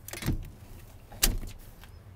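A short scraping rustle, then a single sharp clunk about a second later, as a door or trim piece of the pickup's cab is handled and shut.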